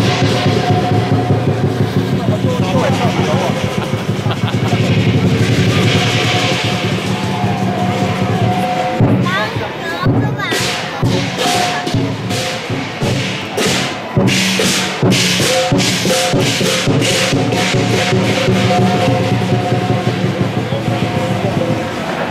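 Chinese lion dance percussion: drum and cymbals played together, the strokes coming in quick, even beats from about halfway through, over crowd voices.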